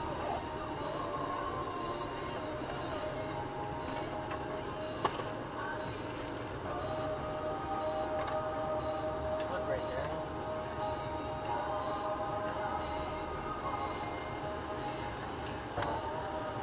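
Inside a 4x4's cabin as it creeps along a dirt track at walking pace: the engine and drivetrain run steadily with a sustained whine, a faint tick repeats about once a second, and there is one sharp click about five seconds in.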